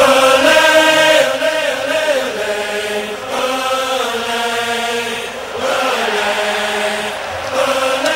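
Voices chanting in long held notes that step and slide up and down in pitch, played back as a recording.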